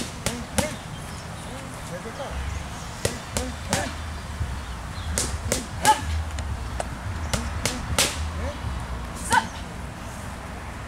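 Boxing gloves striking focus mitts: a dozen or so sharp smacks thrown in quick combinations of two or three, the loudest about six seconds in.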